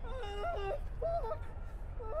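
A man crying out in pain: a long moaning cry, then a shorter one about a second later.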